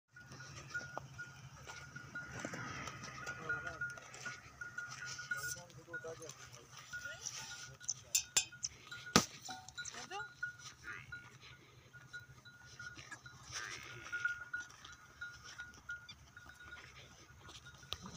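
Livestock calling a few times, with people's voices and a few sharp knocks mixed in.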